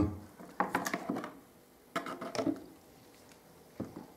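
Handling noise from a plastic gripper guard, cut from square PVC downpipe, being worked and lifted off a carpet gripper strip. There are two short runs of scraping clicks, about half a second in and again at two seconds, and a single brief knock near the end.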